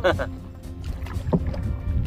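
Open-air ride in a small wooden canoe being poled along: steady low wind rumble on the microphone, a voice briefly at the very start and a faint short sound about a second and a half in.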